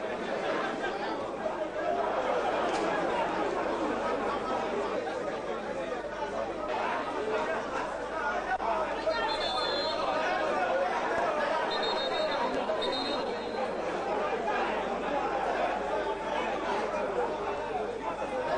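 Football stadium crowd: a dense, steady babble of many voices chattering and calling out, with no single voice standing out. Two short high whistle-like tones sound about nine and twelve seconds in.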